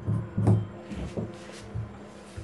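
Tailor's shears cutting through blouse fabric on a cutting table: a run of irregular snips, roughly two a second, loudest about half a second in.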